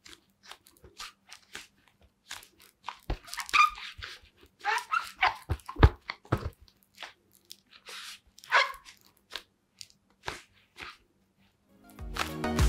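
Adidas Predator Accuracy GL Pro Hybrid goalkeeper gloves, latex palms and rubber grip spikes, gripping and rubbing a football: irregular crunchy rustles and clicks with a few short squeaks.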